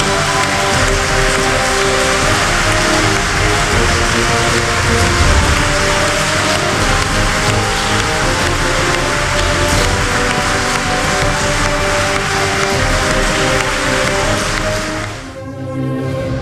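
A congregation applauding and cheering over music with long sustained chords. About fifteen seconds in the applause stops and the music is left on its own, beginning to fade.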